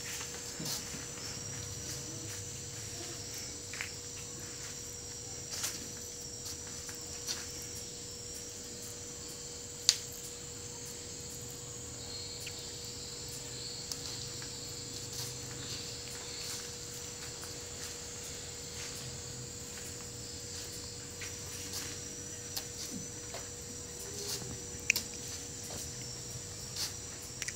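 Steady high-pitched chirring of insects, with a faint steady hum underneath. Scattered faint taps run through it, and there is one sharp click about ten seconds in.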